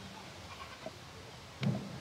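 A pause in a slow vocal chant of long held notes. The previous note fades out at the start, then there is faint room tone with one small click, and a short vocal onset or breath near the end before the next phrase.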